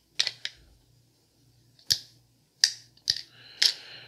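About six sharp, unevenly spaced clicks and taps as a folding knife is picked up off a wooden desk and handled, its blade and lock clicking as it is closed.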